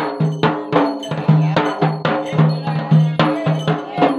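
Ritual drumming on a two-headed barrel drum, struck with a stick and the bare hand in a fast, steady rhythm of several strokes a second, each stroke ringing with a low pitched tone.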